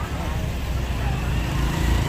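Road traffic running along a street: a steady low engine rumble that grows louder toward the end as a vehicle comes closer, with faint voices behind it.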